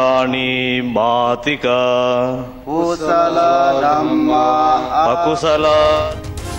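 Buddhist devotional chanting in Pali, sung in long, drawn-out held notes with short breaks between phrases over a low steady drone.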